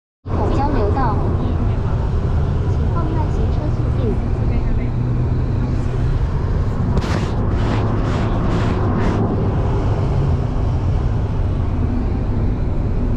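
Steady low rumble of road and engine noise inside the cabin of a moving Toyota car, with a few short bursts of noise between about seven and nine seconds in.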